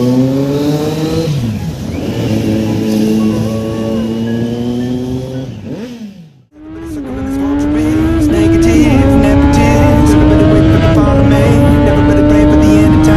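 Kawasaki Z900's inline-four engine accelerating through the gears, its note rising and dropping back at each shift. It fades out about halfway, then returns at highway speed as a higher, steadier engine note, slowly climbing, over a rush of wind.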